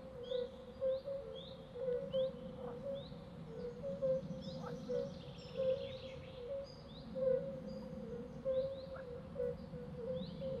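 Forest ambience of small birds chirping repeatedly, roughly two short calls a second, with a quicker run of chirps about halfway through, over a steady low drone.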